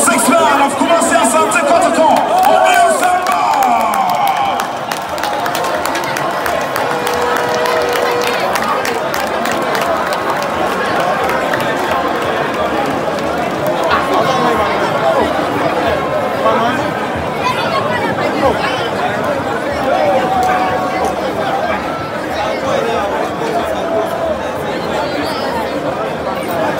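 Crowd cheering and talking over one another, many voices at once, with clapping through roughly the first ten seconds.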